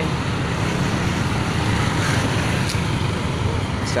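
Steady road and traffic noise heard while moving in traffic: a continuous low rumble of engines and tyres with no distinct events.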